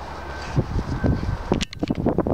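A dog rolling in grass and mouthing a toy: rustling and soft irregular knocks, with a sharp click near the end, over low wind rumble on the microphone.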